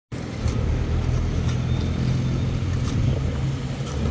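An engine running steadily with a low drone, with a few faint knocks over it.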